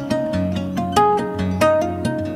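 Background music: plucked string instrument playing a steady melody over a held bass note.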